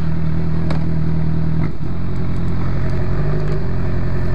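Motorcycle engine running at low speed with a steady low drone. It dips briefly a little under two seconds in and changes pitch again shortly before the end, as with shifting or easing off the throttle.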